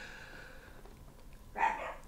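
Pet dogs vocalising: a faint, steady high-pitched whine, then a short, louder bark near the end.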